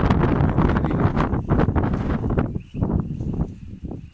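Wind buffeting the microphone in a loud, rough rumble, which drops away sharply about two and a half seconds in. After that come quieter scattered rustles over a faint steady high hum.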